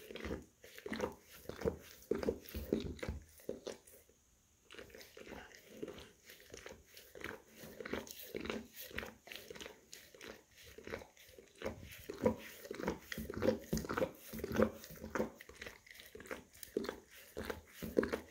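English cream golden retriever licking and grooming its paw close to the microphone: a steady run of short licking strokes, with a brief pause about four seconds in.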